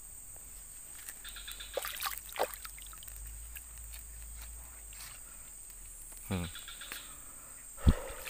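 Steady high-pitched insect drone, with faint clicks and rustles of a fishing net being handled as a fish is worked free. A short splash near the end as a hand dips into the river water.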